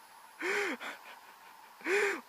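A man's breathy gasping exhalations, twice, each a short voiced 'haa' that rises and falls in pitch, about a second and a half apart: he is out of breath after climbing the long stone stairway.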